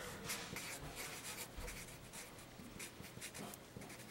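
Felt-tip marker writing on a sheet of paper: faint, quick scratching strokes as words are written out by hand.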